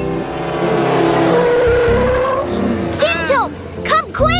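Cartoon race car engine and tyre-skid sound effects as a car drives up and stops, followed by short high voice calls about three seconds in.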